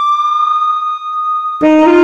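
Saxophone holding one long high note with the accompaniment dropped away beneath it. About a second and a half in, the note ends and the backing track comes back in with a new, lower saxophone phrase.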